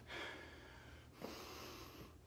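A man's two faint breaths between lines, a short one just after the start and a longer one a little past the middle.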